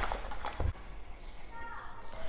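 A wet paint roller being shaken out to fling off the rinse water: one short burst of noise about half a second in.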